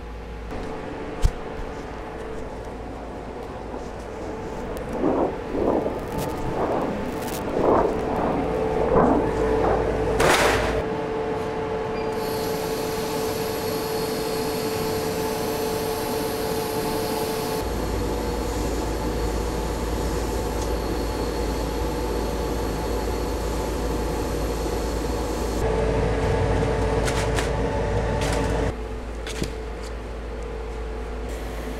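Laser cutter running: a steady machine hum with held tones, and the cutting head's drive motors whirring in a string of short rising and falling sweeps in the first half. A higher hiss joins for a long stretch in the middle.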